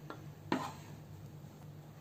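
A spatula knocking lightly on cookware while scooping cooked mawa mixture from a pan into a glass bowl: one soft knock about half a second in, over a faint low hum.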